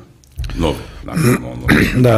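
A brief pause, then a man's voice starting up about half a second in and running on as speech.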